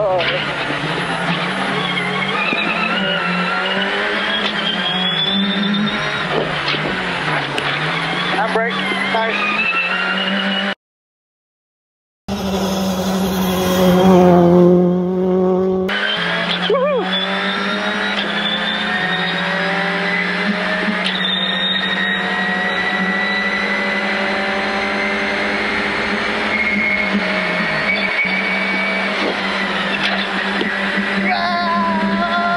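Citroën R5 rally car's turbocharged four-cylinder engine at full throttle, heard from inside the cabin: the revs climb again and again and drop back at each upshift, then hold high and rise slowly while the car runs flat out. The sound cuts out for about a second and a half about eleven seconds in, and a louder stretch with falling revs follows.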